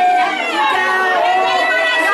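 A woman singing into a hand microphone over a loudspeaker, with long held notes, and several other women's voices singing and talking over one another.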